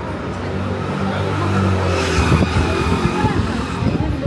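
A car driving past on the street. Its engine hum and tyre noise grow louder to a peak about halfway through, then fade.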